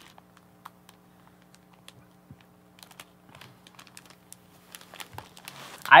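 Faint rustling, crinkling and small clicks of a stack of vinyl record sleeves being handled and shifted on a tabletop, over a faint steady hum.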